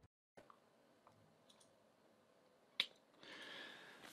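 Near silence: faint room hiss, with a single short click about three seconds in.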